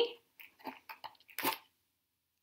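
Paper cutout rustling and scraping as it is pulled out of the opening of a box: a few short crinkles, the loudest about one and a half seconds in.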